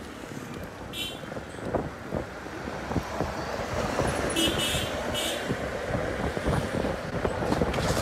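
Road traffic noise heard from a moving bicycle: a motor vehicle approaching and passing close by, the noise growing steadily louder over the second half.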